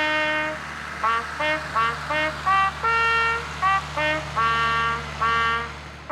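A solo bugle playing a ceremonial call of separate, held notes, over a low steady hum.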